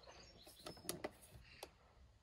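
Very quiet, with a few faint clicks as a finger presses the power button of an Alde central heating touch-screen control panel, and faint bird chirps in the background.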